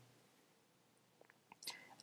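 Near silence, with a few faint mouth clicks and then a short breath drawn in through the mouth near the end.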